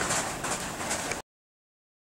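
Faint background noise with no clear source, fading away. A little over a second in, the sound cuts off to dead silence.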